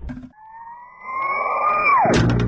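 Produced intro sound effect: a long tone that rises slowly in pitch over a building rumble, then swoops sharply down near the end.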